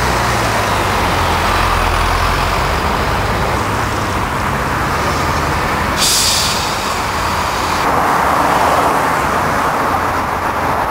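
Highway traffic passing close by: steady tyre and engine noise from cars and heavy trucks. A low engine drone stands out in the first few seconds, and a hissier rush sets in suddenly about six seconds in.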